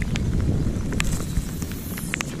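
Outdoor ambience on a boat: a steady low rumble of wind on the microphone, with a few scattered light ticks.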